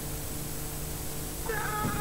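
Steady low tape hiss and hum, then about a second and a half in a long, held, meow-like cry begins.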